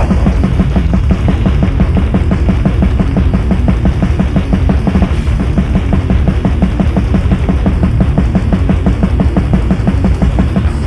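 1990s death/black metal demo-tape recording: the full band comes in loud, with rapid, even double bass drumming driving under the distorted guitars.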